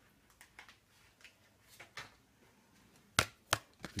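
Playing cards being handled: faint light rustles and ticks, then two sharp card clicks about a third of a second apart near the end.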